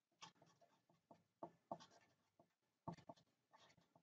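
Marker pen writing on paper: a few faint, short strokes, the loudest about three seconds in.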